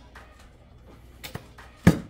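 A hot sauce bottle knocking once, sharply, as it is set down on a table near the end, after a few faint clicks from the bottle being handled.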